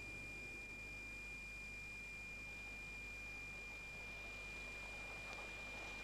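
Faint steady hiss and low hum of a recording's background noise, with a thin high-pitched whine held constant throughout; no other sound.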